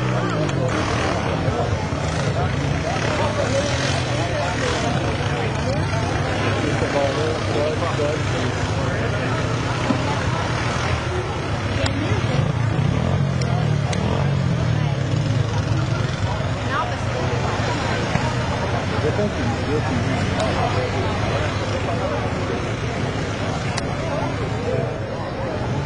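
ATV engine revving and labouring as the quad churns through a mud pit, its note rising and falling. Spectators talk over it throughout.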